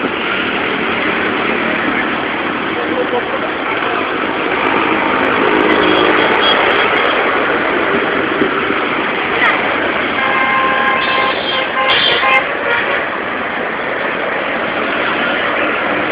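Steady noise of heavy road traffic passing in both directions. A vehicle horn sounds briefly about eleven seconds in.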